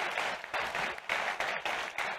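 Audience applauding, the clapping swelling and easing in waves.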